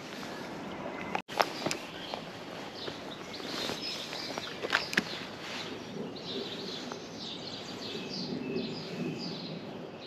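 Outdoor waterside ambience with small birds chirping, and a few sharp clicks scattered through it.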